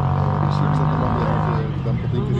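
A man speaking close up, over a steady low motor hum; a higher steady drone in the background stops about one and a half seconds in.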